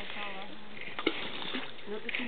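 A Welsh terrier jumping into a lake: one short splash about a second in, over a steady hiss and faint voices.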